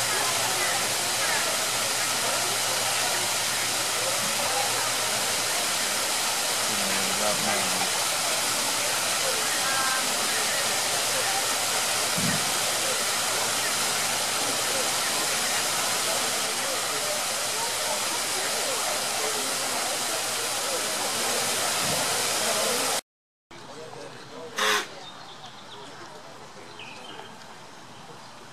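A steady rush like falling water, with faint voices underneath. It cuts off suddenly about 23 seconds in and is followed by quieter surroundings and a single sharp knock.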